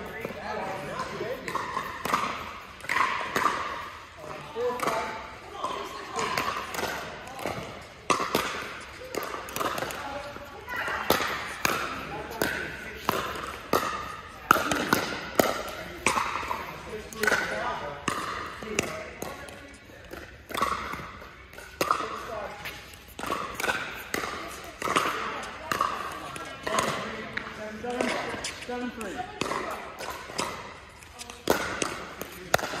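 Pickleball paddles striking a hard plastic pickleball in rallies: sharp pops at irregular intervals, some coming in quick runs. They ring in a large indoor hall over people's voices talking.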